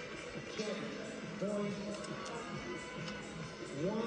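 Music with a few spoken words, played from a television broadcast into the room, with held tones and gliding pitches.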